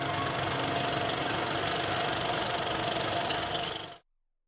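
Film projector running: a steady mechanical whir and clatter that fades out near the end.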